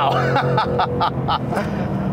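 2019 Ford Mustang Bullitt's naturally aspirated 5.0-litre V8 heard from inside the cabin, holding a steady exhaust note that fades about a second and a half in. The driver laughs over it in short bursts.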